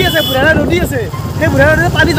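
Voices talking over the steady low running noise of a motorcycle being ridden.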